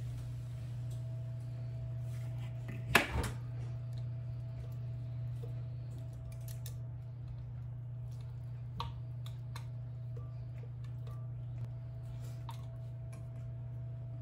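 Pancake batter poured from a blender jar into a cast iron pan of foamy butter, then a spatula scraping and tapping the jar, heard as scattered small clicks with one sharp knock about three seconds in. A steady low hum runs underneath.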